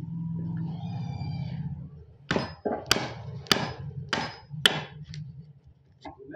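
Wooden-handled chisel struck with a mallet while chopping a mortise in a window-frame timber: five sharp blows about 0.6 s apart, starting about two seconds in, then a light tap. A low steady hum runs underneath during the first two seconds.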